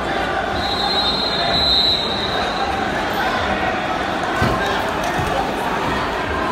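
Steady murmur of a crowd in a large sports hall. Early on a referee's whistle sounds once as a high steady tone for about a second and a half. Later come a few dull thumps on the wrestling mat.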